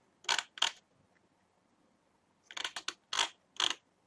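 Scattered clicks at a computer's mouse and keyboard: two quick clicks at the start, a short run of clicks about two and a half seconds in, then two more.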